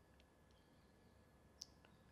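Near silence: room tone with a few faint clicks, the sharpest about one and a half seconds in.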